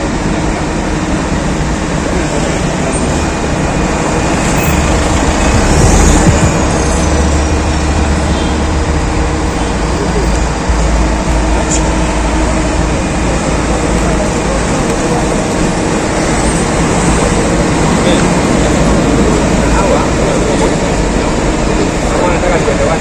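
Roadside street ambience: continuous traffic noise with several people talking indistinctly nearby. A deeper low rumble swells for several seconds a few seconds in.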